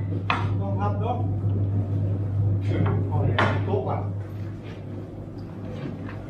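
Workers talking on a building site, with occasional clinks and knocks of tools and buckets, over a steady low hum.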